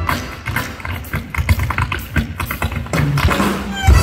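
Live band music drops to a break of quick, sharp percussive taps with little else under them, then the full band, bass included, comes back in on a loud hit just before the end.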